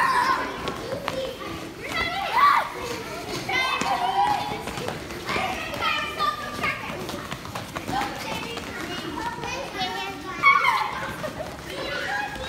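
A group of children's voices calling and shouting over one another during an active tag game, in scattered short bursts.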